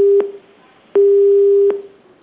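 Telephone busy tone on the phone line: an even, steady beep of about three quarters of a second, with equal gaps between. One beep ends just after the start and another sounds from about a second in. The call to the official has not gone through.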